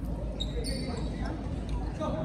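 The sound of a gymnasium during a basketball game: players' and spectators' voices over a steady low rumble of hall noise, with a brief high-pitched squeak about half a second in.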